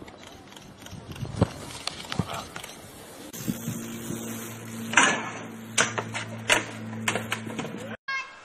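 A string of sharp knocks and impacts, the loudest about five seconds in. About three seconds in, a steady low hum starts under them and runs on until the sound cuts off at the end.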